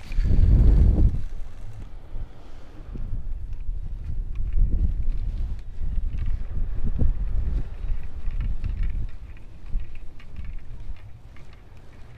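Wind buffeting the camera's microphone: a low, uneven rumble that is strongest in the first second and a half and then rises and falls in gusts.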